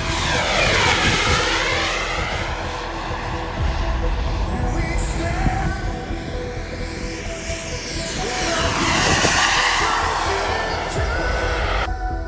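Jet turbine noise from a radio-controlled A-10 model flying low passes. It swells and sweeps down and back up in pitch as the jet goes by about a second in, and again around nine seconds in.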